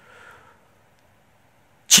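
A pause in a man's speech: a faint breath in the first half second, then near silence until his speech resumes just before the end.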